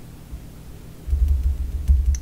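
Dull, low thudding rumble lasting about a second near the end, like a table or microphone being bumped while cards are handled, over a steady low hum.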